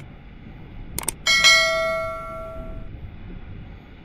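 Two quick mouse-click sounds, then a single bright bell ding that rings out and fades over about a second and a half: the click-and-notification-bell sound effect that accompanies a YouTube subscribe-button animation.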